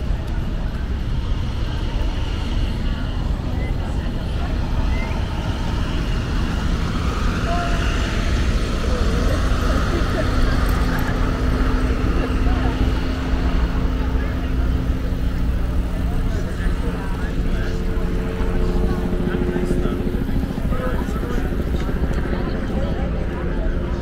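Steady outdoor ambience: passers-by talking, over a low, continuous rumble of road traffic.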